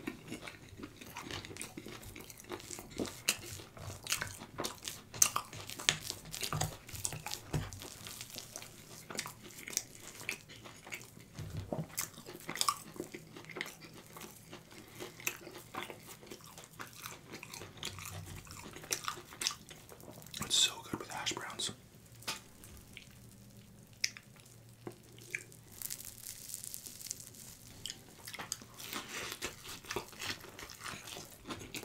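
Close-miked chewing and wet mouth sounds of eating stretchy cheese with hashbrown, with many small clicks, smacks and soft crunches.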